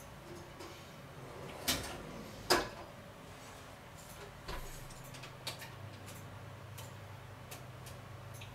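A clay Römertopf pot going onto the oven rack and the oven door shutting, two knocks about two seconds in. Then a series of soft clicks as the oven's controls are set, and a low steady hum sets in about halfway through as the oven is switched on.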